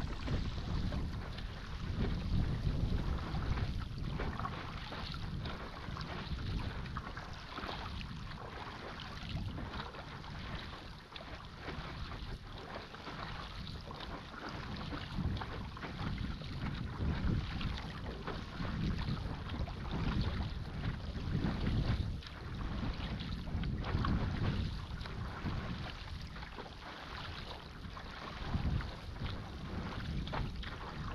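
Sea water splashing and swishing around a moving stand-up paddleboard, rising and falling irregularly, with wind rumbling on the microphone.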